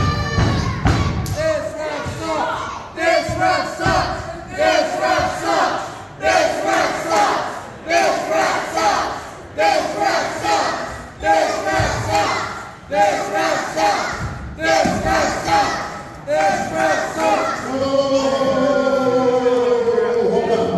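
Crowd of spectators shouting in unison at a steady pace, about one shout every second and a half, counting along with a referee's ten-count that ends the wrestling match in a draw. A longer, falling shout comes near the end.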